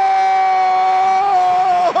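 A radio play-by-play announcer's drawn-out shout of "Touchdown!", the last syllable held as one long, nearly level note that dips slightly and breaks off just before the end.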